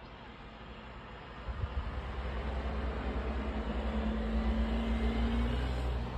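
A vehicle passing on the road below, its sound building over a few seconds to a steady low hum with road rumble, then easing near the end.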